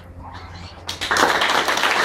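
Audience applause that breaks out suddenly about a second in, after a brief near-quiet pause at the end of an acoustic guitar piece, and carries on steadily.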